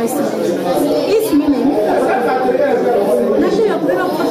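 Speech only: people talking in an ongoing conversation.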